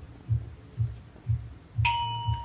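Electronic sounds from a Wonder Workshop Dash robot as it is switched on: low, heartbeat-like thumps about two a second, then a bright ding that rings on near the end.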